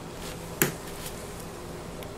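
A single sharp tap about half a second in, with two fainter ticks, as a freshly cut bar of soap is handled against a wooden soap cutter. A steady low hum runs underneath.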